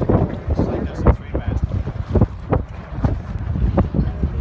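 Wind buffeting the microphone of a camera on a moving boat, in irregular gusts over a steady low rumble of the boat running through the water.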